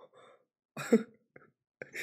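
A man's single short, cough-like burst of breath about a second in, with softer breath sounds before it.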